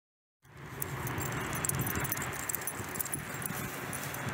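A dog and a person walking on pavement: footsteps and light jingling of the dog's collar and leash hardware over steady outdoor background noise, starting suddenly about half a second in.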